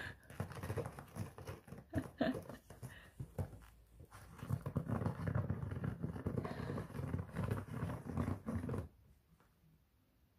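Cat clawing at a corrugated cardboard scratch pad: a run of short raking strokes, then a denser, louder stretch of several seconds that stops abruptly near the end.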